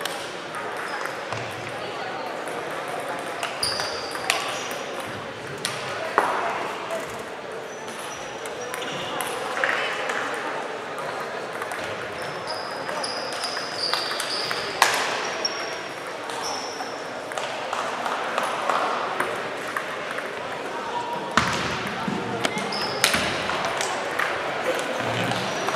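Table tennis hall ambience: scattered sharp clicks of balls being hit and bouncing on tables nearby, with voices talking in the background and occasional short high squeaks.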